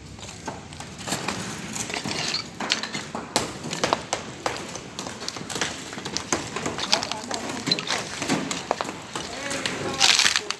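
Brick wall being demolished by hand: frequent short knocks and clatters of bricks and rubble, with people talking.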